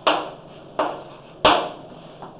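Chalk knocking against a blackboard three times while writing, each sharp knock ringing briefly in the room.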